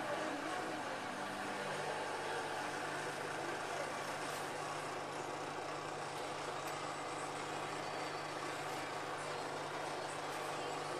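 Whirlpool AWM5145 front-loading washing machine running, a steady motor hum with wet laundry turning in the drum.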